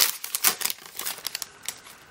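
Foil wrapper of a Prizm basketball card pack crinkling and tearing as it is opened by hand: a quick run of crackles that thins out near the end.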